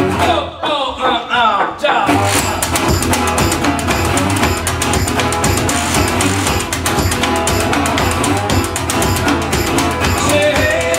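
Live blues played on a resonator guitar with washboard rhythm. About half a second in, the rhythm drops out for a short break of gliding guitar notes, then the full groove of scraped washboard and guitar comes back in at about two seconds and runs on steadily.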